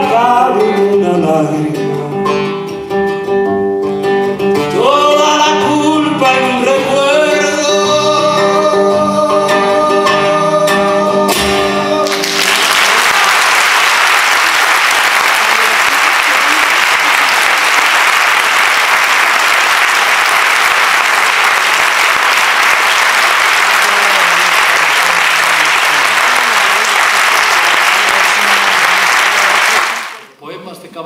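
A man singing with a classical guitar. The song ends about twelve seconds in, and an audience then applauds steadily for the rest of the time.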